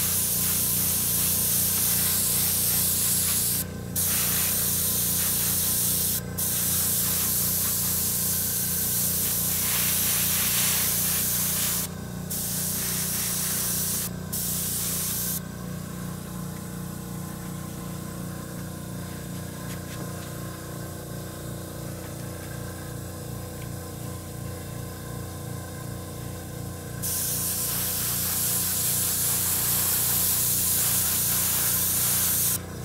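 Gravity-feed airbrush spraying thinned paint: a steady hiss of air through the nozzle, broken briefly a few times as the trigger is let go. It stops for about ten seconds in the second half and starts again near the end. A low steady hum runs underneath.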